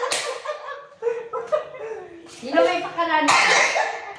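Several people talking excitedly and laughing over one another, with a sharp smack right at the start.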